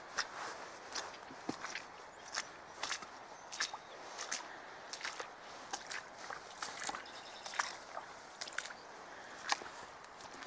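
Footsteps walking on wet, muddy, grassy ground, a step roughly every half to two-thirds of a second, over a faint steady hiss.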